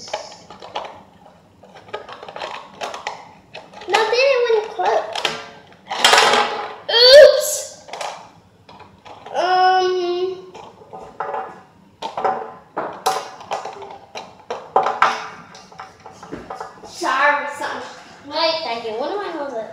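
A young girl's voice without clear words, with some held, sung notes, over light clicks and taps of small plastic toys being handled on a table.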